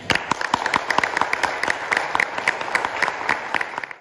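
Audience applauding, a dense patter of many hands clapping that cuts off abruptly.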